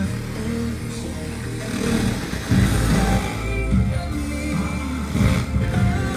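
Music with a strong bass line playing through a Sansui stereo receiver and its loudspeakers, heard in the room.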